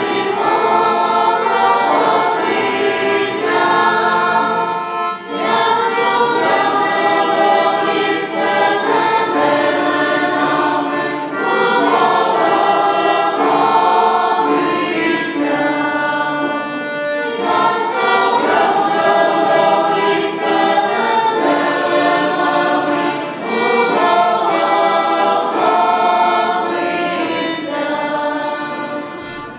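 A choir of carolers singing a Ukrainian Christmas carol (koliadka) in several voices, with accordion accompaniment, in continuous phrases.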